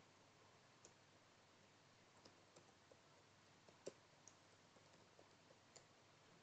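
Faint computer keyboard keystrokes, a dozen or so scattered irregularly over near silence.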